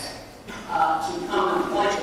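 A man lecturing over a microphone, with a brief pause about a second long before he carries on.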